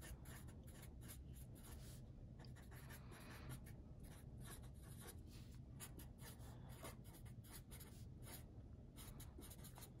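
Faint scratching of a Sharpie fine-point marker writing on paper, in many short strokes.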